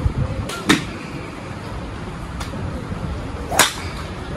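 Golf driver striking balls off a tee: sharp cracks of club head on ball, a strong one shortly before the first second and the loudest about three and a half seconds in, with a fainter click between, over a steady driving-range background.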